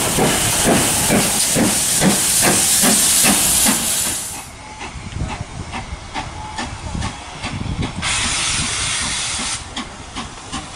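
GWR King class 4-6-0 steam locomotive 6023 'King Edward II' passing close by, steam hissing loudly over an evenly spaced clicking. About four seconds in the sound drops sharply to a quieter hiss and lighter clicks, with a stretch of steady hiss shortly before the end.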